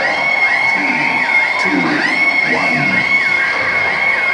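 Live electronic music played loud through an arena PA: a high synth note that keeps dipping down in pitch and swooping back up, over a driving low end. The crowd shouts and cheers underneath.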